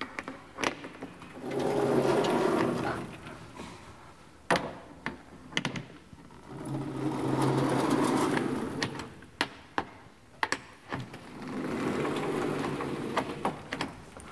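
Vertically sliding blackboard panels being pushed along their tracks with a long pole: three long rumbling slides, each swelling and fading over two to three seconds, with sharp knocks and clacks between them as the pole and panels bump into place.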